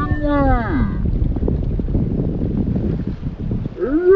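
Wind rumbling steadily on the phone's microphone at the water's edge, with a drawn-out, pitch-bending voice for about the first second and again just before the end.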